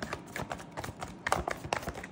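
Tarot cards being handled and a card drawn from the deck: a series of irregular light card clicks and flicks.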